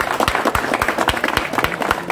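A small group of people clapping by hand, with many separate, irregular claps.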